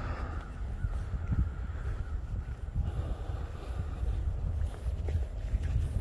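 Outdoor ambience: low wind rumble on a phone microphone and the footsteps of someone walking. A faint drawn-out call sounds in the first couple of seconds.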